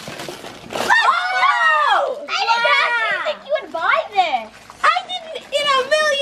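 Wrapping paper being torn at the start, followed by several children shouting and squealing in high, excited voices, without clear words.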